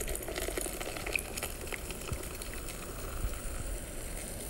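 Liquid fizzing and bubbling, a steady crackle of many small pops.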